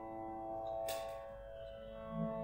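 Saral Sardar & Sons harmonium holding steady reed notes over a drone, quietly, with a short breathy hiss about a second in.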